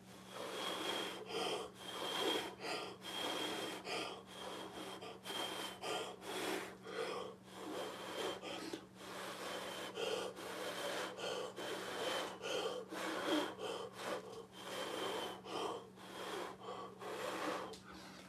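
A person blowing through pursed lips onto wet poured acrylic paint, in repeated short breathy blows about one and a half a second. This is the fluid-art blow-out technique, pushing the white paint outward into wispy lacing.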